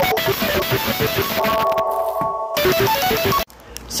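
Phone ringtone playing a guitar music clip with a rhythmic melody, cut off suddenly about three and a half seconds in: an incoming call that is stopped.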